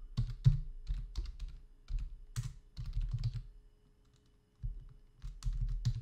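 Typing on a computer keyboard: an irregular run of keystrokes, a pause of about a second past the middle, then a few more keys.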